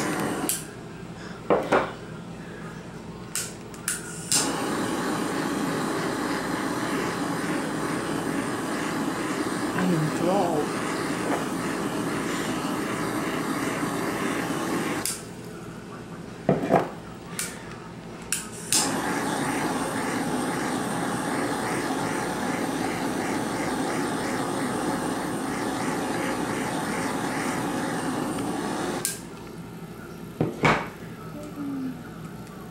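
Handheld butane kitchen torch burning with a steady hiss as it caramelises the sugar on a crème brûlée. The flame runs in three long stretches, stopping about half a second in and at about 15 and 29 seconds, with a few sharp clicks in the gaps.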